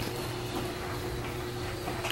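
Steady room hum with a faint constant tone, and no distinct sounds standing out.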